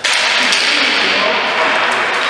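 Ball hockey play on an indoor rink floor: a steady hiss of rink noise with a couple of sharp clacks, about half a second in and near the end, from sticks striking the ball or floor around a faceoff.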